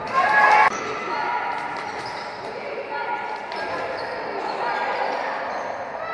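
Basketball game sounds in a sports hall: a ball bouncing on the wooden court amid players' and spectators' voices, with a short, loud outburst of voices right at the start.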